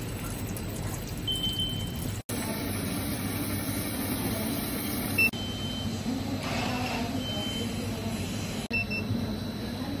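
Short high electronic beeps, four in all, spread through the clip over a steady low hum and hiss. The sound drops out suddenly for an instant three times.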